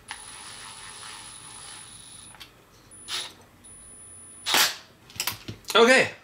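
Hex driver turning the small screw that secures the rear drive cup's pin on a Traxxas Sledge differential output: a steady scraping for about two seconds, then a few short rattles and clicks of metal parts being handled, the loudest about three-quarters of the way through.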